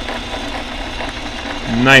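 An RCBS electric case prep station's motor runs steadily, its tool spindles spinning.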